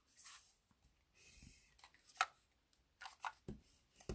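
Faint rustles and a few small clicks of hands handling cardstock on a craft mat, the sharpest click about halfway through.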